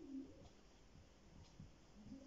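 Near silence: quiet room tone, with a brief faint low hum at the very start.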